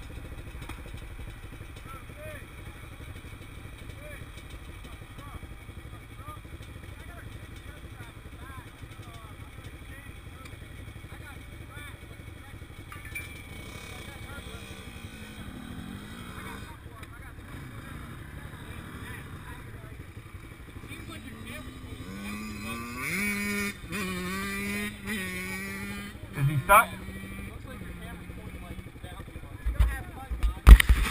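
Dirt bike engines idling nearby as a steady low rumble. Past the middle, one engine is revved up in steps and held at higher speed for a few seconds, with a sharp blip near the end of it.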